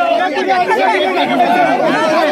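Crowd of men talking over one another at the same time, a loud, steady jumble of voices with no single speaker standing out.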